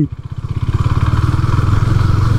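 KTM Duke 390's single-cylinder engine running with an even, rapid pulse, growing louder over the first second.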